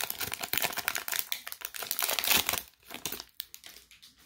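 Bowman Platinum trading-card pack wrapper crinkling as it is torn open and pulled off the cards. The crinkling is dense for about two and a half seconds, then thins to a few scattered crackles.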